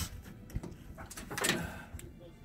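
Lift-up equipment compartment door on the side of an M1142 tactical firefighting truck being unlatched and swung open: a short click about half a second in, then a louder rush of noise as the door lifts, peaking around a second and a half in.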